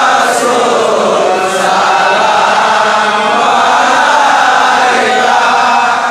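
A large group of men's voices chanting together, continuous and loud, many voices overlapping.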